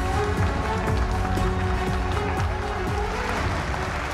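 Upbeat theme music with a strong bass beat and percussion, starting abruptly just before and running under the animated show logo.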